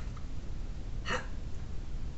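A man's voice saying a single short, breathy "how" about a second in, demonstrating the Cockney-style vowel, over a low steady room hum.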